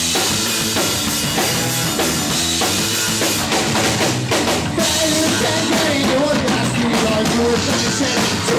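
Live rock band playing loud, with a drum kit's bass drum and snare keeping a steady beat under electric guitars; a wavering melody line comes in about halfway through.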